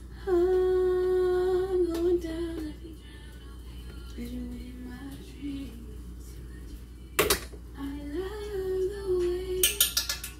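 A woman singing a few long, held notes without words: a loud one at the start, lower ones around the middle, and another near the end. A sharp click comes just before the last one.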